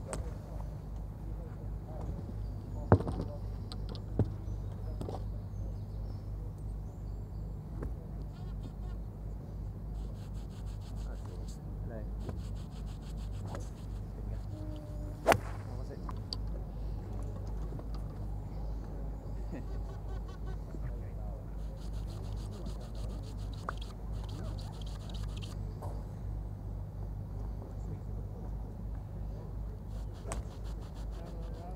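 Golf iron striking balls on a driving range: a sharp click of clubface on ball about three seconds in, a smaller knock a second later, and another strong strike about fifteen seconds in, over a steady low hum.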